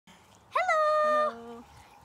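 A child's high voice calling out a long, held greeting about half a second in, with a lower voice joining briefly as it ends.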